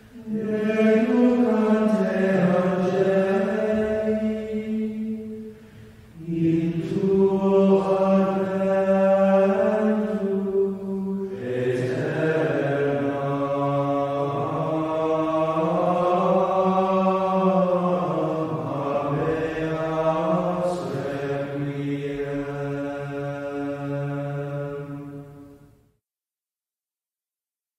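Slow chanted singing in long held notes that move gently in pitch, in phrases broken by a short pause about six seconds in and a new phrase near the middle, fading out just before the end.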